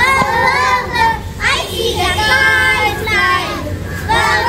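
Young children singing a phonics alphabet song in short phrases with brief breaks between them, over a steady low hum.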